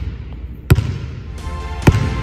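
Basketball bounced twice on a hardwood gym floor, two sharp bounces a little over a second apart, echoing in the gym.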